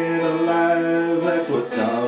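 A man singing one long held note over an acoustic guitar, with a new strummed chord and a fresh phrase starting about a second and a half in.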